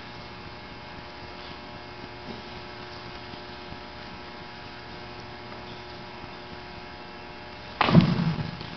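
Steady electrical mains hum from the microphone and sound system, with no speech over it. Just before the end, a sudden louder noise cuts in.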